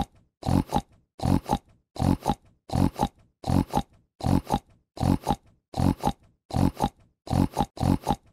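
A pig grunting over and over in an even rhythm, each grunt a quick double pulse, about three every two seconds.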